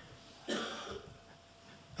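A man briefly clears his throat once, a short rough noise about half a second in that fades within half a second; the rest is quiet room tone.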